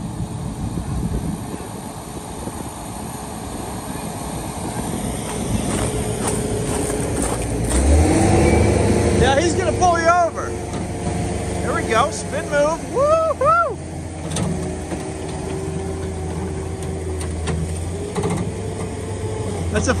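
Diesel engine of a New Holland compact track loader running under load while towing, growing louder about eight seconds in. Short voice sounds are heard around the middle.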